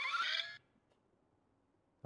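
Small servo motors of a motorized Iron Man Mark L replica helmet whirring as the front faceplate swings open, rising in pitch, then stopping abruptly about half a second in.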